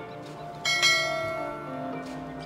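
A bright bell ding, struck a little over half a second in and ringing out as it fades over about a second, over soft background music.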